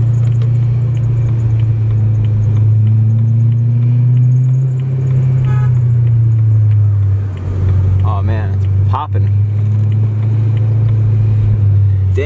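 BMW E90 M3's V8 engine heard from inside the cabin while driving at low speed: a steady low drone with road noise, rising slightly in pitch a few seconds in and easing off again after about seven seconds.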